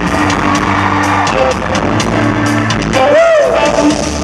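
Live rock band playing, with the drum kit's hits to the fore as the drummer is spotlighted. About three seconds in, a voice whoops up and back down over the band.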